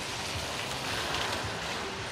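Steady hiss of rain on a wet city footpath, with a low rumble underneath.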